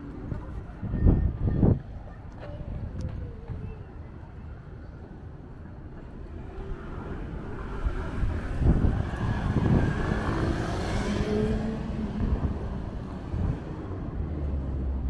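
City street traffic at a junction, with a vehicle passing close by: its noise builds from about six seconds in, peaks around ten to eleven seconds, and fades away. There is low wind rumble on the microphone throughout, with a few heavy low thumps near the start.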